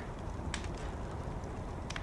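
Low, steady background ambience of a TV drama's soundtrack in a pause between lines of dialogue, with a faint click about half a second in and another just before the end.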